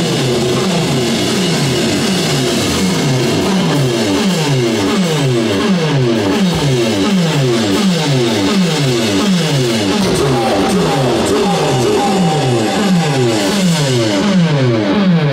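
Electric guitar run through effects pedals, looping a falling pitch sweep over and over, about two to three times a second. A thin held tone joins about ten seconds in.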